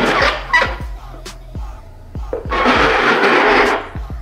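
Bowls scraping as they are slid around on a granite countertop, a rough noise briefly at the start and again for over a second in the second half. Background music with a steady beat plays throughout.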